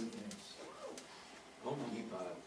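Faint, indistinct voices in short murmured snatches, too low to make out any words.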